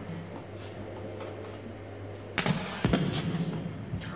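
A small explosion from the television soundtrack: a sharp crack, a second bang about half a second later, and a hiss that fades within a second, as the astral map device blows up in smoke. A steady low electronic hum runs underneath.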